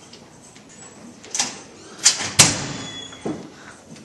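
Steel hallway lockers being slammed: a bang about a second and a half in, then two louder metallic slams just after two seconds, the second the loudest and ringing on, and a lighter knock a second later.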